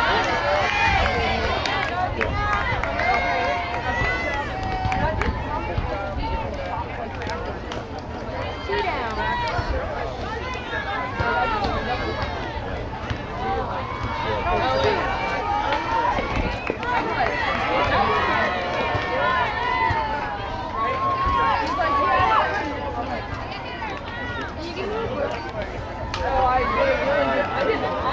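Spectators and players shouting and cheering, many voices overlapping without a break, over a steady low rumble.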